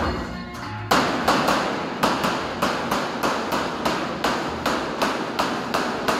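Hammer strikes on the sheet-metal cladding of a 1000 mm diameter pipe elbow: a steady run of sharp knocks, about three a second, starting about a second in.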